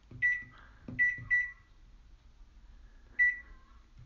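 Microwave oven keypad beeping as its number buttons are pressed: four short, high beeps, each with a light click, three within the first second and a half and one more near the end.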